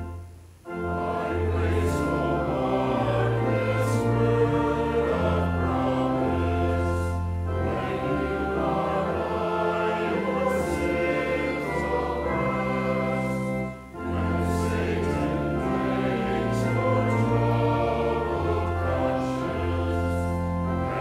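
Congregation singing a hymn verse with organ accompaniment in sustained chords. The verse begins after a brief break about half a second in, with a short breath pause near the middle.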